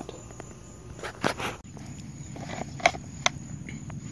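Outdoor ambience with a steady high insect drone in the background, broken by a few soft clicks and knocks about a second in and again near the end.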